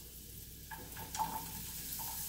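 Carrots sautéing in butter in a frying pan, sizzling steadily. The sizzle gets louder about a second in as diced patty pan squash is dropped into the pan, with a couple of light clicks.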